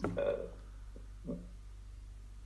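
A pause in conversation: a brief hesitant vocal sound near the start and a fainter one just after a second in, over a steady low hum.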